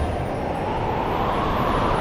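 A whooshing sound effect: a noisy rush that rises steadily in pitch over about two seconds.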